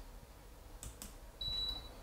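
A couple of faint clicks, then a single short high beep, about half a second long, from a wall-mounted split air conditioner's indoor unit acknowledging the infrared 'on' command it has just received.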